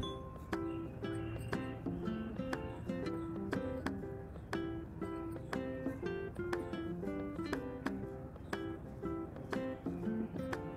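Background music of plucked strings in a steady rhythm of about two notes a second.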